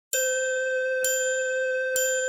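A bell-like chime struck three times about a second apart on the same note, each strike ringing on into the next: the opening of a hip-hop song's beat.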